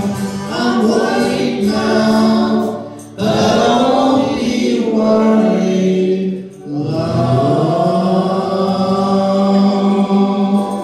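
Live acoustic jug band, several voices singing long held notes in harmony over banjo, acoustic guitars and fiddle. The sound drops briefly about three seconds in and again about six and a half seconds in.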